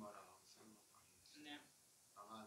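Soft, faint speech: a man's voice trailing off at the start and a short phrase about one and a half seconds in, with near silence between.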